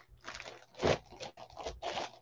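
Clear plastic bag crinkling as a bagged jersey is handled and set down into a cardboard box, in several short bursts, the loudest about a second in.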